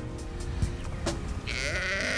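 A sheep bleating: one long, wavering bleat that starts about halfway through, over background music with a regular beat.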